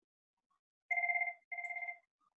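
An electronic ringer sounding two short trilling bursts of a steady two-pitch tone. The bursts begin about a second in, each lasting about half a second.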